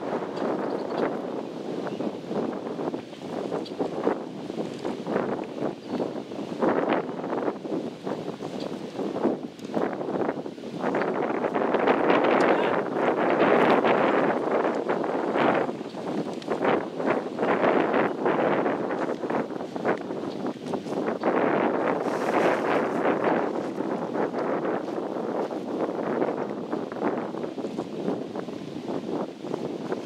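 Wind buffeting the microphone in uneven gusts, strongest from about twelve to sixteen seconds in.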